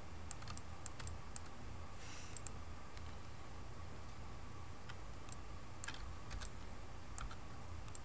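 Scattered, irregular clicks of a computer mouse and keyboard at a desk, over a low steady hum.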